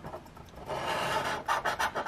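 A scratching coin scraping the coating off the winning-numbers area of a scratch-off lottery ticket. It starts about two-thirds of a second in as a steady rasp and breaks into short quick strokes near the end.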